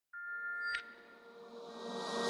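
Electronic intro sound: several held synthesizer tones that end with a short sharp hit just under a second in, followed by a swell of hiss that rises toward the end.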